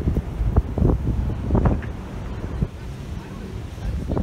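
Wind buffeting a phone's microphone on a cruise ship's open deck: a low, gusty rumble that rises and falls.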